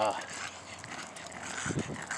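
A puggle making faint short vocal sounds during a walk, over steady outdoor background noise.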